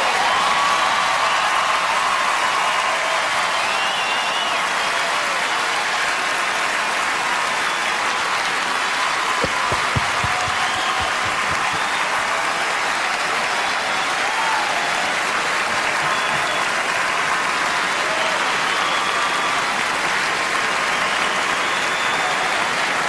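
Large arena audience applauding steadily, with occasional cheers rising above the clapping.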